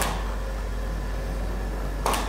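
A camera shutter clicking once, sharply, right at the start, over a steady low hum.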